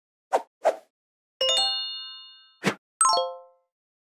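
Animated-logo sound effects: two quick pops, then a bright chime of several ringing tones that fades over about a second, a short hit, and a second chime that dies away faster.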